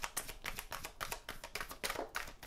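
A deck of tarot cards being shuffled by hand, the cards clicking against each other in a quick, irregular run of short clicks.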